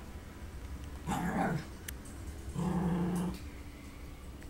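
Coton de Tulear dogs at play growling twice, each growl under a second long: once about a second in and again about two and a half seconds in.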